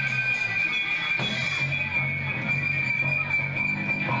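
Live rock band playing loud distorted electric guitars, with a steady high ringing tone held throughout over a pulsing low part.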